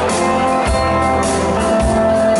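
A dansband playing live, with electric guitar and drum kit carrying a steady beat under sustained notes.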